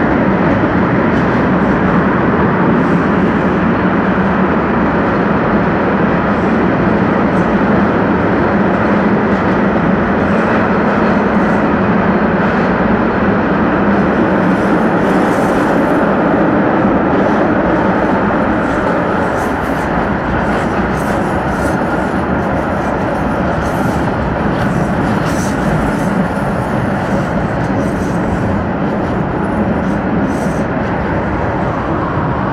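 Steady running noise of a tram heard from inside the car, a little quieter in the second half.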